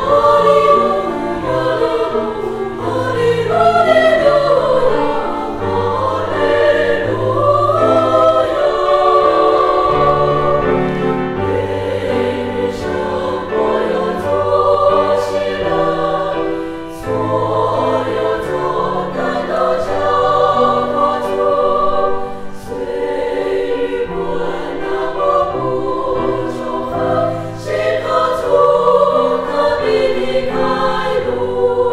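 Women's choir singing a hymn in parts, several voices moving together in held and gliding notes, with a low sustained accompaniment beneath.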